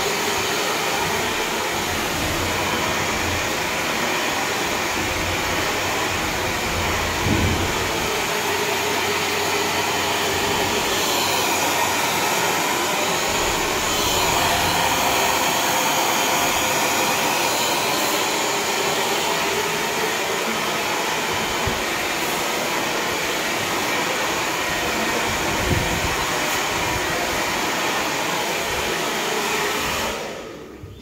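Handheld hair dryer blowing steadily as short hair is blow-dried: an even rush of air at a constant level.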